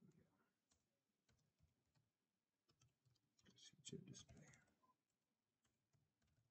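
Very faint computer keyboard typing: scattered key clicks, with a quick burst of keystrokes about four seconds in.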